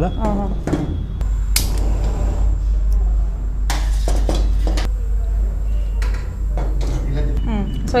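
Steel bowls and a pan knocking and clinking a few times as they are handled, about one and a half seconds in and again around four seconds, over a steady low hum.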